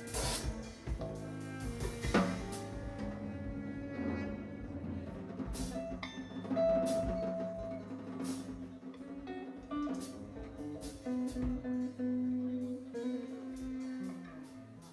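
Live instrumental band music: a saxophone, an electric guitar and a bouzouki playing long held notes over a drum kit, with cymbal strikes throughout.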